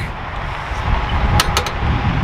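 Wind buffeting the camera microphone, a gusty low rumble with a few sharp handling clicks about one and a half seconds in.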